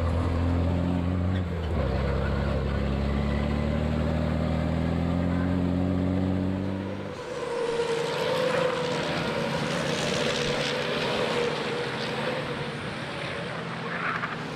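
A racing truck's diesel engine heard on board in the cab: its pitch drops at a gear change, then climbs steadily as the truck accelerates. About halfway through this gives way to the trackside sound of a pack of racing trucks driving past.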